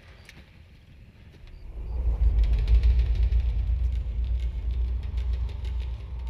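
A deep low rumble of the film's sound design swells in about two seconds in and holds, with faint clinks above it.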